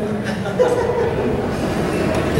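A man laughing briefly into a handheld microphone, over the steady noise of a crowded hall.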